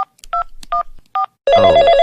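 Touch-tone phone keypad dialing: four short two-tone beeps about 0.4 s apart. About a second and a half in, a telephone starts ringing loudly with a rapid electronic trill.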